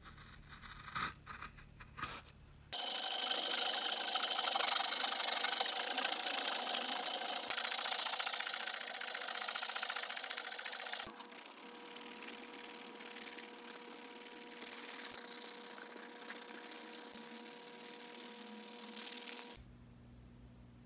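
A carving knife scraping curls off poplar wood in a few faint strokes, then a rotary tool with a sanding drum starts suddenly and runs at a steady high whine, its abrasive band loudly grinding the wooden lure body. The sanding changes in tone about eleven seconds in and stops shortly before the end.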